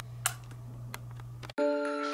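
A single short kiss smack of the lips over a steady low hum, then music starts abruptly about one and a half seconds in.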